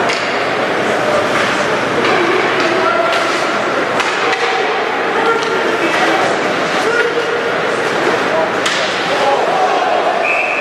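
Ice hockey play in a rink: sharp clacks of sticks hitting the puck and ice, about eight at irregular moments, over a steady murmur of spectators talking.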